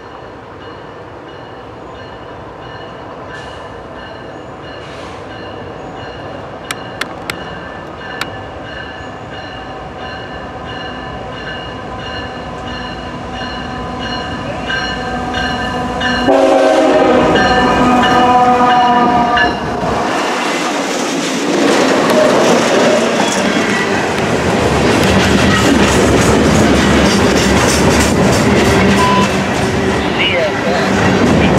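GE diesel freight locomotives, an ET44AH leading a CW40-8, approaching and growing steadily louder. The lead locomotive's air horn sounds loudly a little past halfway, for about three seconds as it passes. Then loaded ballast hopper cars roll by close up, with continuous wheel clatter.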